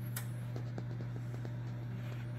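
A steady low hum with a few faint ticks.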